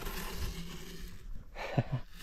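A man's short, breathy laugh starting near the end, over faint low wind rumble on the microphone.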